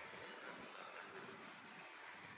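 Faint, steady room ambience with no distinct events.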